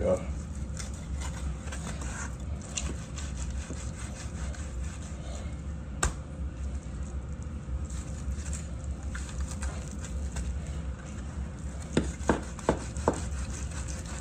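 A knife sawing and cutting through a rack of barbecued ribs on a wooden cutting board: repeated rubbing strokes of the blade, with a sharp knock about six seconds in and a few blade knocks on the board near the end. A steady low hum runs underneath.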